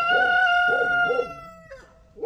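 A rooster crowing: one long held note that falls slightly in pitch and fades out about a second and a half in.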